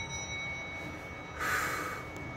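An elevator's arrival chime rings out as a faint, steady, high tone. About one and a half seconds in comes a short breathy burst, like a sniff or a snort.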